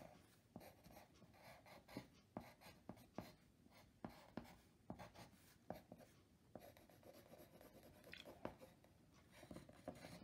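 Faint pencil strokes on drawing paper: a string of short scratches and light ticks at an uneven pace as branches are sketched in.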